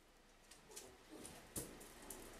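Near silence, with a few faint, brief chirps from a small pet cage bird and a soft click about one and a half seconds in.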